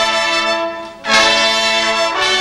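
School band with trumpets and trombones playing held chords. The chord dies away about halfway through, then the band comes back in with a sudden loud, bright entry that holds.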